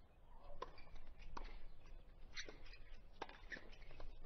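Tennis ball struck by rackets in a doubles rally: a serve and then four sharp hits, each about a second apart.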